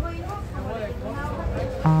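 Street ambience in a town plaza: faint background voices over a low, steady rumble of traffic.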